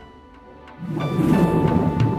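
A rumble of thunder swells in about a second in, with music starting at the same time.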